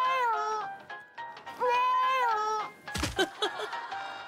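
Two drawn-out, meow-like high cries, each rising, holding and then falling in pitch, with a short clatter about three seconds in.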